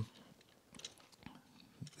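Faint, scattered small clicks of a plastic Transformers Red Alert figure being handled, its light pieces pushed back into place.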